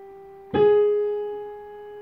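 A single note, G sharp, struck on a digital piano about half a second in, ringing and slowly fading.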